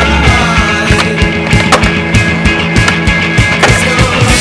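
Rock music playing, with skateboard sounds mixed over it: urethane wheels rolling on concrete and a couple of sharp clacks of the board on the ground in the first two seconds.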